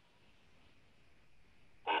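A pause in a man's speech: near silence with faint room hiss, broken near the end by one short spoken syllable.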